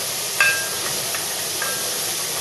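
Chopped vegetables sizzling steadily as they sauté in olive oil in an aluminium pot, stirred with a wooden spoon. A few light knocks of the spoon against the pot ring briefly, the loudest about half a second in.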